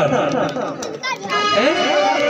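A man's voice through a microphone and PA system, with keyboard music held underneath.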